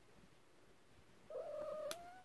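A domestic cat giving one drawn-out meow, starting about a second and a half in and rising slightly at its end. A short, sharp click comes near the end.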